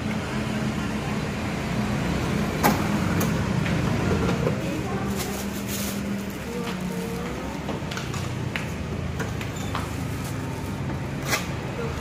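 Shop-counter ambience: a steady low hum with faint voices in the background, a thin plastic carrier bag rustling and crinkling about five to six seconds in, and a couple of sharp clicks.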